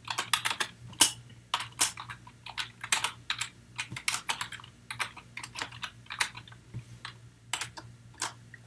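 Typing on a computer keyboard: quick, irregular key clicks, several a second, with a brief pause near the end.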